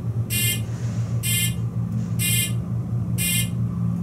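Elevator car's fire-service buzzer sounding in short pulses, four buzzes about a second apart, over a steady low hum: the car has been placed in fire-service recall.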